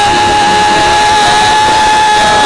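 Church worship music: a single long note held steady in pitch, over a loud, noisy wash of sound.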